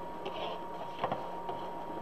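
Soft rustling of wreath mesh being folded and gathered by hand, with a short click about a second in, over a steady faint high-pitched hum.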